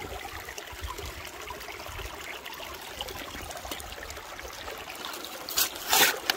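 Shallow burn water running steadily through a sluice box. Near the end, two sharp scrapes of a metal scoop digging into a bucket of gravel.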